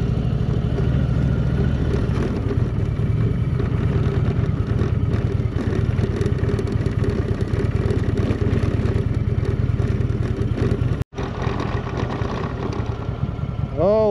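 Heavy Indian touring motorcycle's V-twin engine running at low speed on a dirt road, with a continuous rattle of the ride over the rough gravel surface. The sound drops out for an instant about eleven seconds in.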